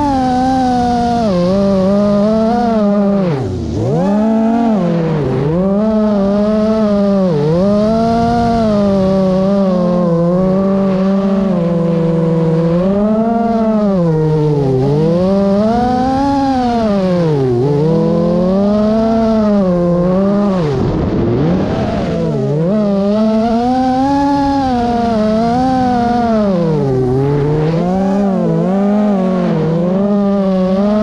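Small quadcopter drone's electric motors and propellers whining, the pitch swooping up and down every second or two as the throttle changes. It drops low briefly about three and a half seconds in and again about twenty-one seconds in.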